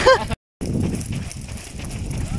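Running footsteps slapping on a paved road, with wind and handling noise from a camera carried at a run. A voice ends right at the start, then the sound drops out completely for a moment before the running resumes.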